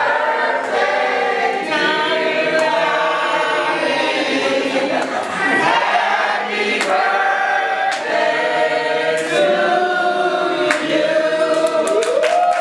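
A small group of women singing a birthday song together, unaccompanied, in full voice. Clapping breaks in right at the end as the song finishes.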